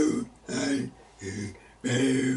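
A solo man's voice singing a hymn line in short, held notes with brief breaks between them.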